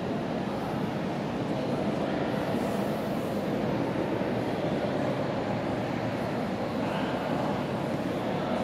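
Steady hubbub of a crowd of people talking indistinctly in a large stone-walled hall, with no single voice standing out.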